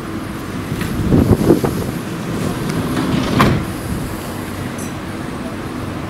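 A Ford Transit minibus's engine running steadily at idle, with a sharp thud about three and a half seconds in as the van's sliding side door is shut.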